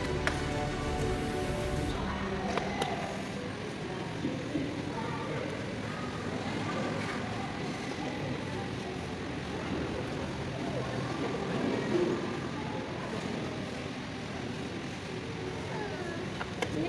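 Background music for about the first two seconds, then cuts to the live sound of a crowded hall: indistinct voices of people standing around, with a few sharp clicks.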